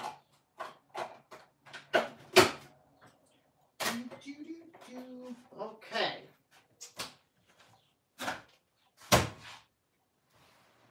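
Kitchen clatter as coffee is being made: a string of knocks and clicks from cupboards, a mug and a coffee maker being handled. The loudest knocks come about two and a half and nine seconds in.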